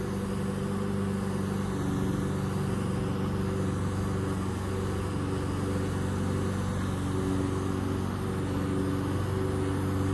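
Cordless auto airbrush's built-in compressor running steadily at about 30 PSI while spraying coating, a constant motor hum with the hiss of air at the nozzle.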